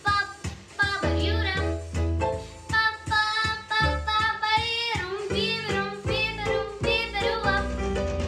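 A nine-year-old girl singing an estrada pop song over a recorded backing track with bass and a steady beat.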